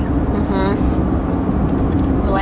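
Steady road and engine noise inside a moving car's cabin, a continuous low rumble with a constant hum. A brief voice sound comes in about half a second in.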